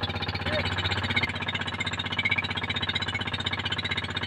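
Small motor running steadily on an outrigger boat, a fast, even pulsing at a constant pitch.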